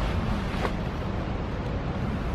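Wind rumbling on the microphone over a steady background of street traffic, with one faint click a little after the start.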